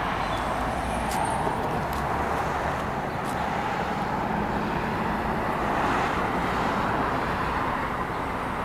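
Steady road traffic noise of cars passing on a busy city street, swelling slightly about six seconds in.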